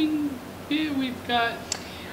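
A person's voice making two short hums with falling pitch, a thoughtful 'hmm' before answering a question.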